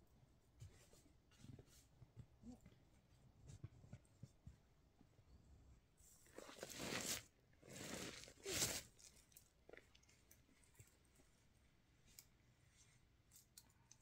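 Near silence with faint rustles, then three loud, close crunching and rustling bursts between about six and nine seconds in, the last the loudest. They come from a child in a padded snowsuit shifting and turning on snow.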